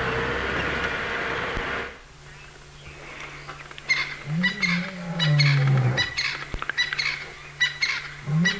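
Open game-drive vehicle running along a dirt track for the first two seconds. From about four seconds in, a male lion roars: a long low moan that rises and then falls, followed by a series of shorter grunts, with the next moan starting near the end.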